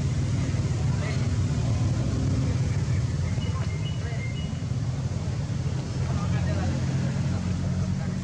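Steady low engine rumble of a motor vehicle running, with a couple of faint high chirps about halfway through.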